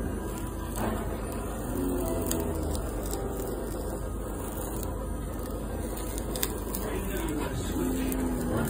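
Handheld kitchen blowtorch on a gas canister burning with a steady hiss as its flame is played over oiled rabbit legs in a pan.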